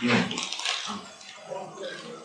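A man's voice speaking hesitantly in a room, a drawn-out "ну" and broken fragments of speech, over a hissy background noise.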